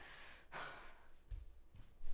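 A faint, short breath, an exhale about half a second in, over quiet room tone with a low hum.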